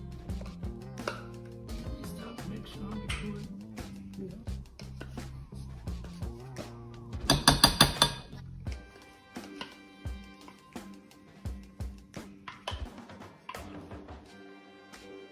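Background music, over which a spoon clinks and scrapes against a measuring cup and glass bowl as peanut butter is spooned out. A quick run of about six loud taps just past the middle is the loudest sound.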